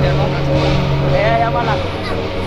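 A person's voice calling out briefly over a steady low engine-like hum, which cuts off near the end.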